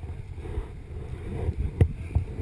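Wind and handling noise on an action camera's microphone, a steady low rumble with tall grass brushing against it, and one sharp knock near the end.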